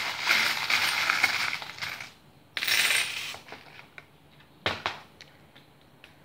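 Small metal charms rattling as a hand stirs them in a plastic box, then a brief burst of clatter as a handful is tossed onto a hard tabletop, followed by a few sharp clicks as they settle.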